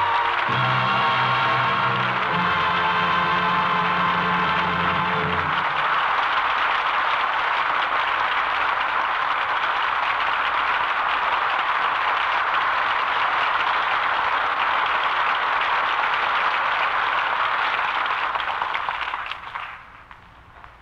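Closing music of the radio play holding sustained chords, ending about five seconds in. Then a studio audience applauds steadily, fading out near the end.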